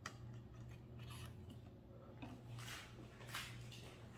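Faint handling sounds of a card-payment terminal with a credit card seated in its chip slot: a few soft scrapes and clicks spread over the seconds, over a low steady hum.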